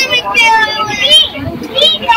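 Children's high-pitched voices, calling and chattering.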